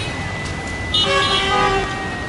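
A vehicle horn sounds once, a steady blast just under a second long about a second in, over the general noise of traffic and a busy street market.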